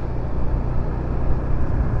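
Yamaha motor scooter's engine running steadily while cruising at about 30 km/h, a steady low hum with road noise.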